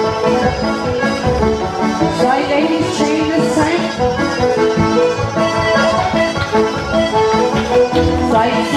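Live Irish traditional dance music from a ceili band playing for set dancing, with a steady dance rhythm.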